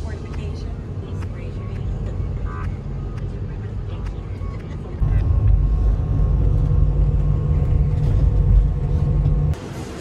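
Steady deep road-and-engine rumble inside a moving vehicle, growing louder about halfway through and cutting off abruptly shortly before the end.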